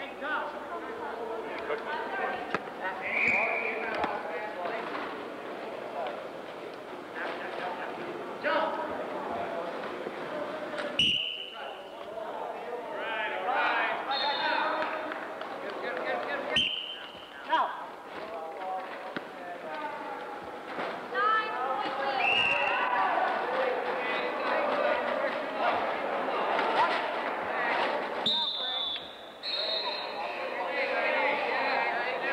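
Game sounds of wheelchair rugby on a wooden gym floor: players' indistinct voices throughout, the ball bouncing, and sharp knocks from the wheelchairs, loudest twice in the middle. Several brief high-pitched squeaks come through at intervals.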